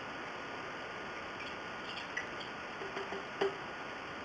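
A few light clicks and taps of kitchen utensils and ingredient containers being handled, the loudest about three and a half seconds in, over a steady background hiss.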